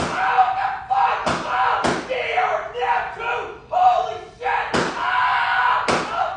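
A high-pitched voice crying out and yelping, with three sharp hit sounds: two close together about a second and a half in, and one more near the end.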